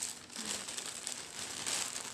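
Packaging crinkling and rustling as it is handled, with many small irregular crackles.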